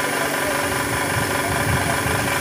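Steady, even drone of a motor running in the background, holding one pitch throughout.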